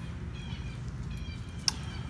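Faint bird chirps in the background over a low steady outdoor rumble, with one sharp click near the end.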